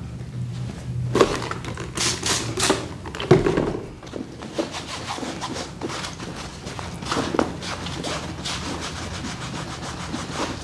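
An old t-shirt used as a damp rag, rubbed and scrubbed over a backpack's fabric in uneven wiping strokes. The scrubbing is strongest in the first few seconds.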